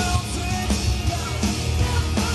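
Loud live pop-punk band playing, with electric guitar and drums over a heavy low end, heard from within the crowd.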